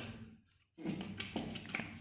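Copper pipe being pushed and fitted into a taped cardboard sleeve, giving light taps and rubbing handling noise that starts a little under a second in.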